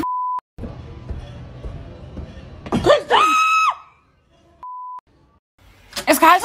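A short censor bleep, then about three seconds in a person's high-pitched scream that rises, holds briefly and breaks off, followed by a second short censor bleep near the end.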